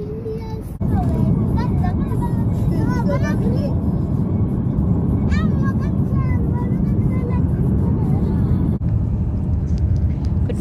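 Steady road and engine rumble inside a moving vehicle, loud from about a second in, with indistinct voices over it.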